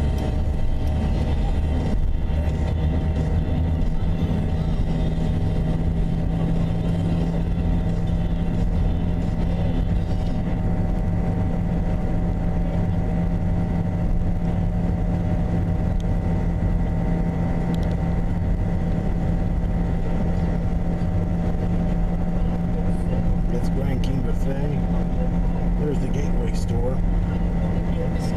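Steady drone of a car's engine and tyres heard from inside the cabin at highway cruising speed, with a low, even hum.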